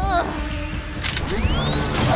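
Added sound effects for a toy robot: mechanical ratcheting and whirring over a low hum, then a rising electronic zap near the end.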